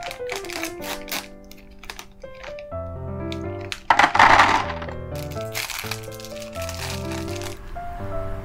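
Background music with a stepping melody and bass line, with sharp clicks scattered through it. A loud burst of noise comes about halfway through and lasts about a second.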